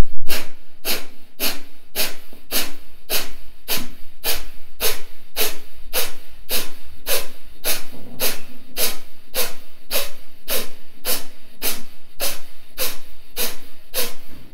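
Kapalabhati fire breathing: a long, even series of sharp, forceful exhalations through the nose, about two a second, the first few strongest.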